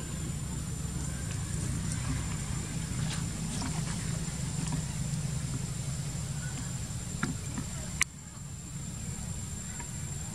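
Outdoor background noise: a steady low rumble with a thin, steady high tone over it and faint scattered ticks. There is a sharp click about eight seconds in, after which it is slightly quieter.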